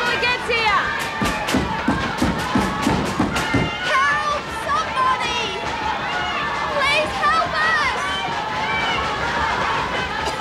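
A crowd of women shouting and yelling together while banging on their cell doors, with a rapid run of thuds in the first few seconds.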